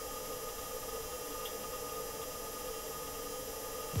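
Perseverance Mars rover's heat rejection fluid pump, a subdued steady whirring with two held tones over a faint hiss, recorded by the rover's own microphone inside the craft in flight. The pump is circulating coolant to keep the rover from overheating.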